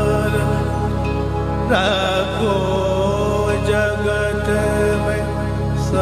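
Male Hindustani classical singer holding long, slowly wavering alaap notes over a steady instrumental drone, the voice coming in strongly about two seconds in.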